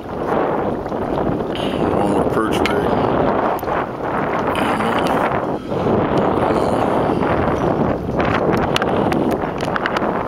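Wind buffeting the microphone over open water: a loud, steady rush that briefly dips a few times.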